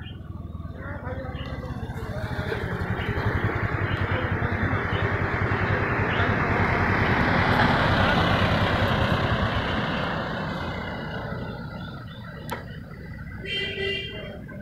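A pickup truck driving past on the road, its engine and tyre noise growing louder to a peak about halfway through and then fading away.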